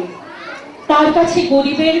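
Speech only: a high-pitched voice declaiming in a hall, resuming after a pause of about a second.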